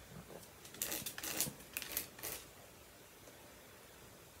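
About five short, dry scrapes as the cut end of a white heavy-duty plastic zip tie, used as stay boning, is rubbed across 50-grit aluminum oxide sandpaper to knock off its sharp edges.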